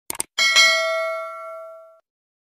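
Two quick clicks, then a bell ding that rings with several clear tones and fades over about a second and a half. It is the sound effect of a subscribe-button animation clicking the notification bell.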